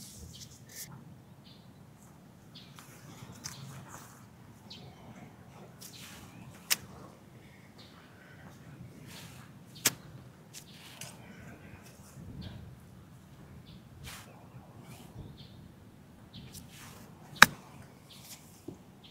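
Golf club striking a ball on chip shots: sharp clicks about seven and ten seconds in, and a louder one near the end, over a faint outdoor background.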